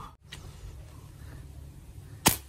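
Wind buffeting the microphone: a steady low rumble with a faint hiss above it, broken by a brief dropout just after the start.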